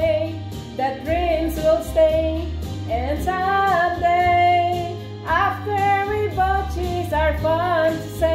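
Music: a female voice singing a slow ballad in long, held, wavering notes over instrumental backing with a bass line.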